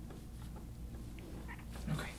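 Faint scraping strokes of a long metal soft-tissue tool drawn over the skin of a back, over a steady low hum, with a short hummed voice sound near the end.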